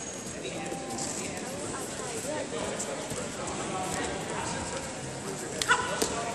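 Wrestlers' feet stepping and shuffling on a foam wrestling mat and hands slapping as they fight for grips, under the murmur of voices in a large gym. Near the end comes one sharp, louder slap or thud as the two lock up.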